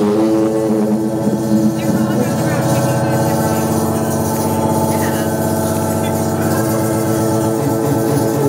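Live band music: a song played through the venue's speakers, built on sustained held chords with a steady, unbroken level.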